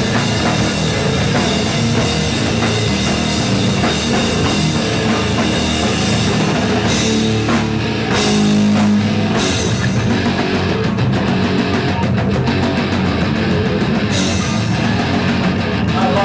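Live heavy rock band playing loud: distorted electric guitar, bass guitar and drum kit through stage amplifiers, with a held low chord around the middle before the drums drive on with regular hits.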